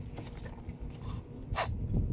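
A person's short, sharp breath through the nose about a second and a half in, over low rumbling handling noise.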